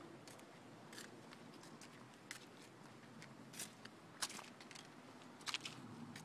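Near silence with a few faint, scattered clicks at uneven intervals.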